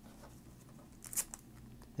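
A brief crinkle of a sealed foil trading-card pack being picked up and handled, about a second in, against quiet room noise.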